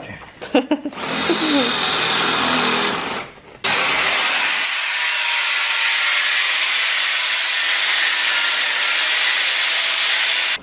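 A cordless drill runs for about two seconds, its pitch falling. After a short break an angle grinder cuts into the scooter's metal exhaust silencer with a loud, steady grind for the rest of the time.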